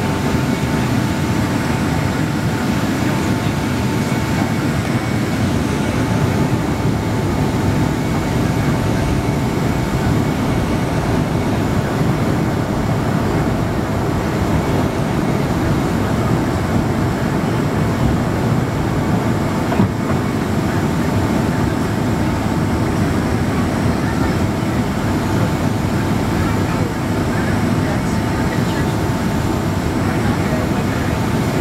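Steady cabin roar inside a Boeing 767-200ER on descent for landing: engine and airflow noise heard from a seat over the wing, with a thin steady whine running through it. One brief knock comes about two-thirds of the way through.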